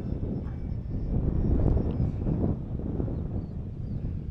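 Gusty wind buffeting the microphone, with the faint, thin high whine of an E-flite Beechcraft D18 electric RC model plane in flight.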